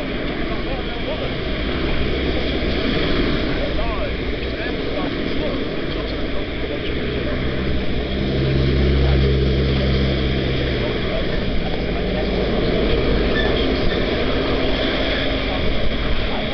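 Passing road traffic with a steady rush of wind and road noise. A vehicle engine's low drone swells about eight seconds in and fades a few seconds later.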